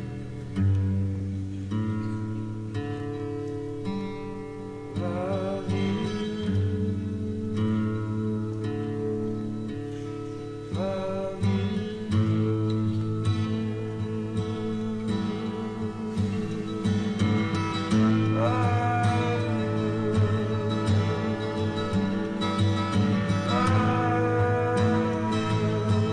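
Live acoustic guitar music with held chords and a singing voice, transferred from a vinyl record.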